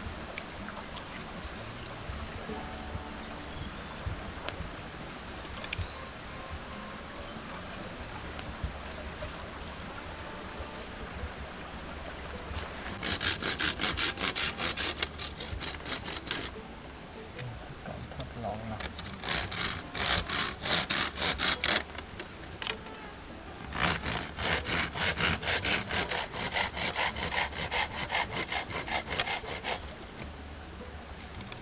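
Rapid rasping back-and-forth strokes of a hand saw working wood, in three bouts, the last one the longest.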